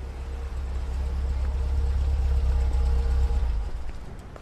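SUV engine running with a steady deep hum as the car drives slowly up and pulls in, growing louder as it approaches and dropping away near the end as it stops.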